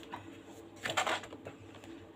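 Hands handling a paperback coloring book as it is brought onto a tabletop: a short papery rustle about a second in, with a faint click near the start.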